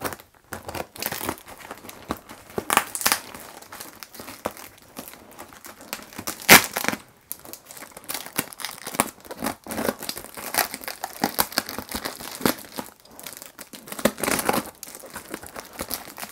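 Packing tape on a heavily taped parcel being cut and pulled away: irregular crinkling and ripping, with one louder sharp rip about six and a half seconds in.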